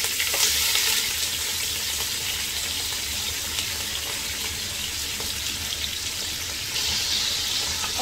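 Sliced red onions frying in hot cooking oil in a pot, a steady sizzle that is loudest in the first second, just after they go in.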